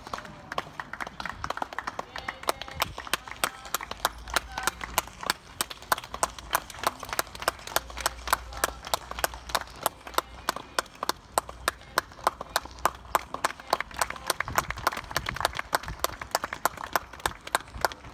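A small crowd of spectators clapping steadily at the end of a tennis match, about four or five claps a second, with faint voices over it.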